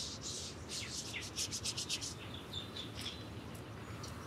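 A hand rubbing briskly over the bare skin of the forearm and wrist: a series of short dry swishes that quicken into a fast run of strokes about a second and a half in, then stop. Faint bird chirps in the second half.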